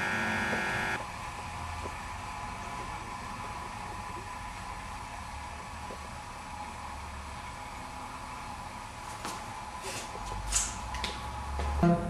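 Small rotary attraction motor running with a steady electrical hum that drops away about a second in, leaving a faint steady background. A few light scratchy sounds and some low rumble come near the end.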